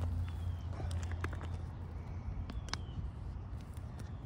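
Quiet outdoor morning ambience: a steady low hum with a few short, high, falling bird chirps and scattered faint ticks.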